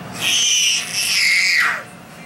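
Two long, very high-pitched squeals in a playful voice, wavering, the second sliding down in pitch at the end.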